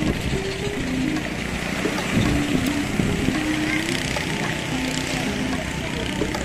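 Steady wind and surf noise with people's voices in the background, under a simple melody of short held notes.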